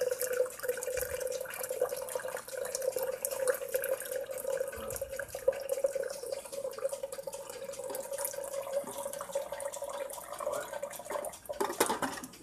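Hot water poured from a stovetop kettle into a glass French press, a steady pour whose tone rises slowly as the carafe fills. The pour stops near the end.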